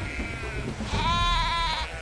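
Sheep bleating: one long, wavering call about a second in, lasting nearly a second, with a fainter call just before it. It is a bleat of distress from ewes and lambs kept apart by a fence.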